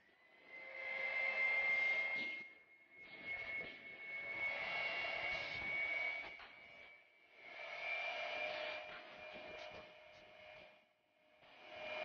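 Electric stand mixer running at medium speed, its motor whining steadily as the wire whisk beats eggs and sugar in a steel bowl. The sound comes in three stretches broken by brief silences.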